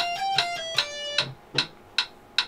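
Electric guitar playing a single-note scale run in eighth notes at 150 beats a minute, stepping up about six notes and back down, over metronome clicks about two and a half times a second. The guitar stops a little over a second in while the clicks go on.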